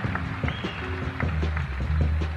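Live blues band vamping, with a steady bass line and drums to the fore, heard from an FM radio broadcast.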